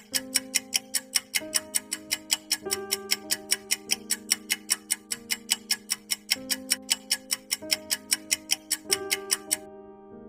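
Countdown-timer ticking sound effect, about four sharp ticks a second, over a soft sustained music chord that shifts every second or so. The ticking stops shortly before the end as the timer reaches zero.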